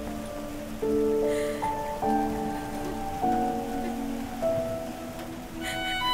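Soft film background score of slow, held notes that step to a new pitch every second or so, over a steady hiss of rain.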